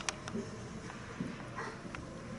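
Ice hockey play heard from the stands: two sharp stick-and-puck clacks right at the start and a few lighter knocks, then a short high yelp-like call near the end over the hum of the rink.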